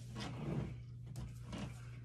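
Soft rustling and shuffling as a person gets up from sitting on the edge of a bed, mostly in the first half-second or so, followed by a few faint light knocks, over a steady low hum.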